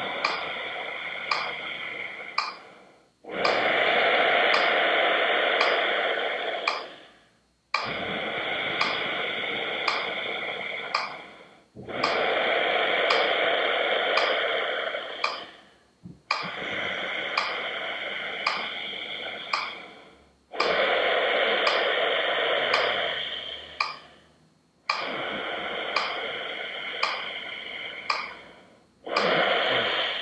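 A metronome ticking about once a second while a man breathes slowly and audibly, long inhales and exhales alternating about every four seconds, four ticks to each breath: 4-4 pranayama breathing.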